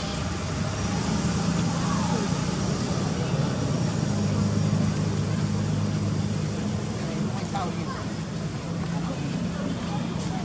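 A steady low engine drone running throughout, louder in the middle, over general outdoor background noise.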